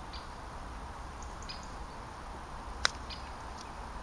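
A golf club striking the ball on a chip shot: a single sharp click nearly three seconds in.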